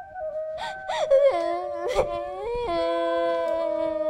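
A young girl crying and wailing, her voice breaking and wavering for about two seconds, over slow background music of long held notes.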